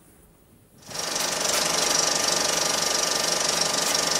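A steady, rapid mechanical rattle from the soundtrack of an old film excerpt, starting abruptly about a second in after a moment of near silence.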